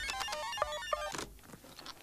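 Electronic gadget briefcase bleeping: a quick run of steady electronic tones stepping up and down in pitch, stopping a little over a second in.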